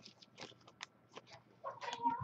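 Faint, scattered clicks and rustles of cardboard trading cards and packs being handled, then a short voice-like sound near the end.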